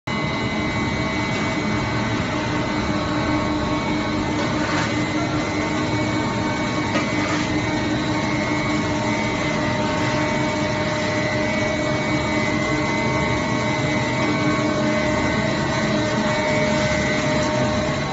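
Machinery of a plastic film recycling line running steadily: shredder, belt conveyor and drive motors make a loud, even noise with several steady humming and whining tones.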